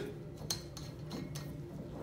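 Steady low room hum with a couple of faint light clicks about half a second and a second in, from glassware being handled on a lab bench.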